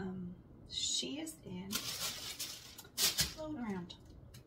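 A woman's voice speaking quietly in a few short phrases, with brief hiss-like noises between them.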